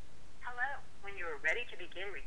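Automated voice prompt from the SchoolMessenger calling system, heard over a phone with thin telephone-line sound; it begins about half a second in, after a moment of line hiss.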